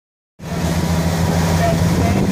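Motorboat engine running steadily at speed, with wind and water rushing; the sound cuts in abruptly about half a second in.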